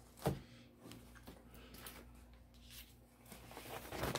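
Faint handling of a hoodie and paper on a heat press: one short knock about a quarter second in, then soft scattered rustling, over a low steady hum.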